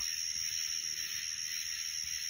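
Steady chorus of summer night insects: a dense, high-pitched shrill hiss that runs without a break.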